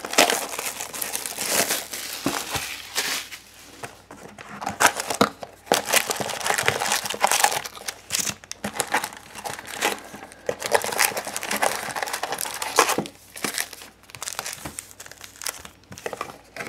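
Foil-wrapped trading-card packs and wrapping crinkling and rustling in irregular handfuls as a hobby box is opened and its packs are lifted out and stacked.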